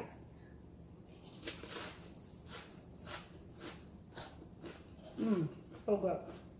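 Crunchy chewing of a bite of black-sesame rice cracker topped with stir-fried wild boar: short crisp crunches about twice a second, starting about a second and a half in.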